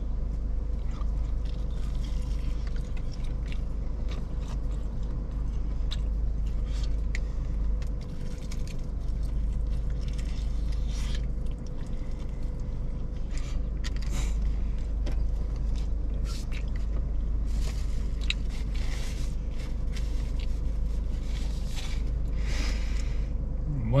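Biting into and chewing a crispy battered fried chicken wing: repeated short crunches of the coating, over a steady low rumble.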